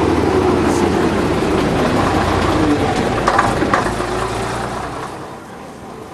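Vintage bus engine running loudly, its note dipping and rising, with a few sharp clicks in the middle. The sound fades away over the last second or so as the bus draws off.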